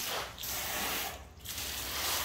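Hose spray nozzle spraying water onto a rubber tire, a steady hiss that breaks off briefly twice and starts again.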